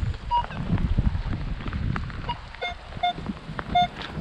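Minelab X-Terra Pro metal detector sounding short target beeps as its coil sweeps the ground: a couple of single higher beeps, then three lower, buzzier beeps near the end, over a low rumble of wind on the microphone.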